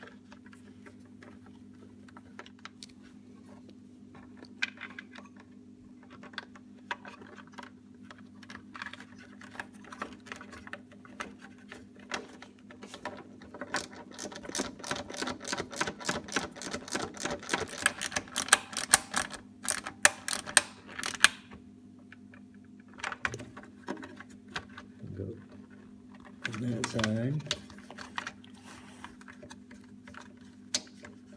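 Hands handling motorcycle wiring and plastic trim: scattered clicks and rustles, then a dense run of rapid clicks and crackles for several seconds past the middle, over a steady low hum.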